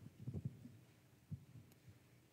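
Faint, irregular low thuds of a liturgical dancer's footfalls moving across the floor, over a faint steady hum.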